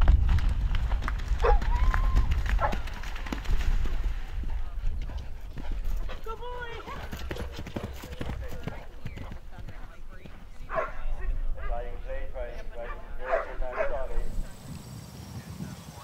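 A horse galloping cross-country, its hooves drumming on the ground, with splashing as it lands in a water jump near the start. People's voices come and go over the hoofbeats.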